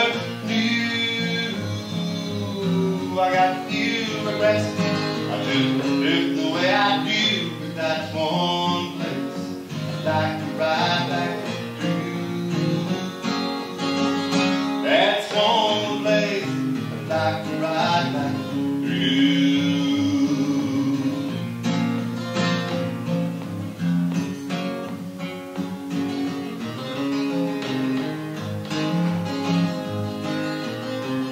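Solo acoustic guitar played through a cowboy song, with a man singing along at points.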